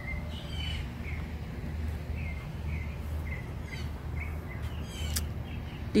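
Small birds chirping outdoors: a run of short, repeated chirps, then a few quick falling notes, over a steady low background rumble.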